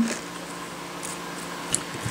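Quiet room tone with a faint steady hum, and one small tick near the end.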